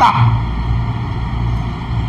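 A steady low rumble with a faint hiss above it, the recording's background noise.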